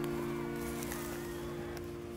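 Background music: a held chord that slowly fades.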